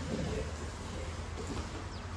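Steady low hum under an even background hiss, the ventilation and wall fans of a large gym hall.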